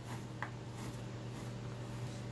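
Quiet room tone with a steady low hum, under a faint rustle of jute rope being pulled by hand through a wire frame, and one small click about half a second in.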